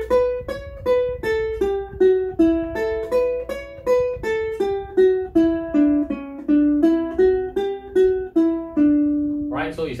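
Ukulele played one note at a time: a slow, even run of eighth-note scale phrases moving from A Mixolydian into D major, each note picked cleanly and left to ring. It ends on a longer held low note.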